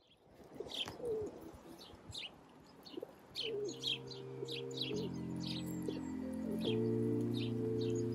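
Small birds chirping in quick short calls, with a lower gliding call or two early on. About halfway, soft background music of held chords fades in and grows louder.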